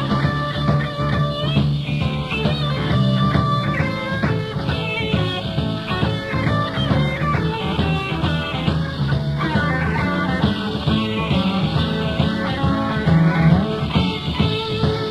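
Live rock band playing an instrumental blues-rock passage, electric guitar lead over bass, drums and keyboards.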